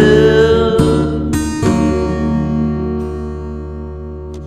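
The end of a song on acoustic guitar: a held sung note stops in the first second, then two strums about a second apart, and the last chord is left to ring and fade out.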